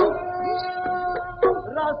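Punjabi dhadi folk music: a bowed sarangi holding a note and sliding between pitches, over sharp strikes of the dhad, a small hand-held hourglass drum.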